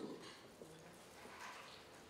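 Near silence: room tone, with the end of a man's voice fading away at the start.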